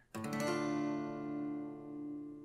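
Steel-string acoustic guitar strumming a D minor chord once, just after the start, and letting it ring out, slowly fading.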